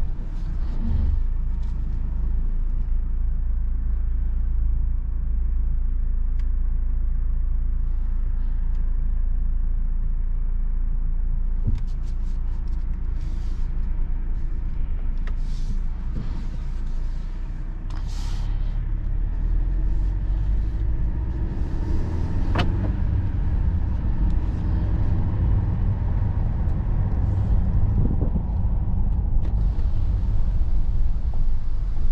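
Low, steady in-cabin rumble from the 2022 Mercedes-Benz GLE 350's 2.0-litre turbocharged inline-four as the SUV moves at low speed, getting louder in the second half as it pulls away. A few short hisses and one sharp click come about two-thirds of the way through.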